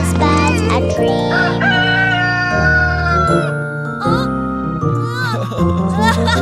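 A rooster crowing, one long drawn-out cock-a-doodle-doo that sags slightly in pitch, over the backing music of a children's song. The sung line ends near the start.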